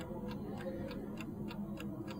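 Mechanical analogue chess clock ticking faintly and quickly, about five ticks a second, over a low room hum.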